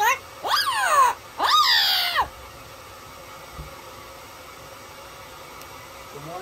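Yellow-headed Amazon parrot giving two loud calls in the first two seconds, each rising then falling in pitch.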